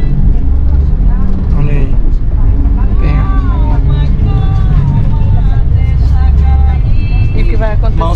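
Steady low rumble of a passenger van's engine and road noise heard inside the cabin while it drives, with a voice talking in the background through the middle.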